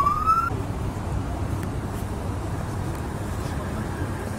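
A siren's wail sweeps upward and cuts off about half a second in, followed by a steady low rumble of vehicle and street noise.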